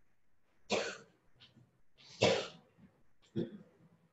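A person coughing three times: about a second in, again near the middle (the loudest), and a shorter one near the end.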